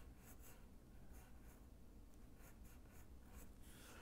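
Yellow wooden pencil sketching on drawing paper: a series of short, faint scratchy strokes.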